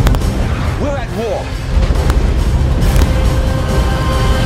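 Film-trailer sound mix: trailer music over a deep, continuous rumble, with sharp booming hits near the start, about two seconds in and about three seconds in. About a second in, a short wavering, voice-like cry.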